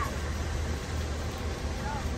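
Steady low rumble of a parked minivan's engine idling, heard from inside the vehicle with the sliding door open, with a faint short voice near the end.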